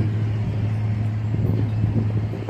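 Steady low hum with a light background rumble, of the kind an idling vehicle engine makes; nothing in it starts or stops.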